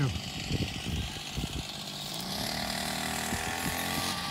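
A small engine drones steadily, coming up about halfway through, with its pitch rising slightly.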